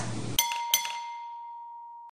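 Chime sound effect: two bright bell-like strikes about a third of a second apart, the second ringing on in one steady tone that slowly fades.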